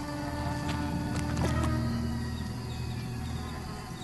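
A fly buzzing steadily over soft background music.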